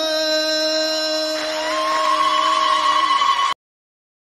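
Group of singers holding one long final note of a sung Amazigh group chant, with a higher held voice joining about halfway through. The sound then cuts off abruptly into silence.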